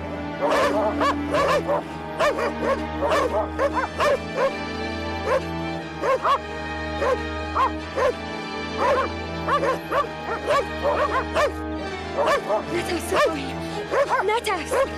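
A dog barking over and over, several barks a second, above a low, sustained drone of film-score music.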